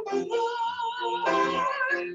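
A woman singing a hymn over grand piano accompaniment, drawing out two long notes with a slight vibrato.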